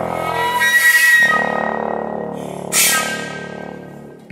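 Contemporary chamber ensemble of flute, clarinet, bass trombone, viola and cello playing held, overlapping tones. A short, bright accent sounds about three-quarters of the way through, and the sound then fades.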